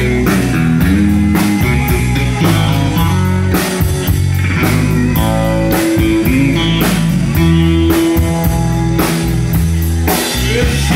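Live band playing an instrumental passage: electric guitar over bass guitar and a drum kit keeping a steady beat.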